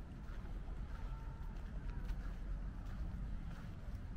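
Outdoor walking ambience: a steady low rumble of wind on the microphone, with faint, regular footsteps about every half second or so.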